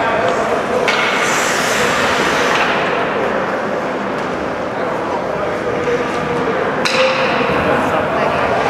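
Ice hockey arena during a stoppage in play: indistinct voices echoing in the rink, with a few sharp clacks, the loudest about seven seconds in.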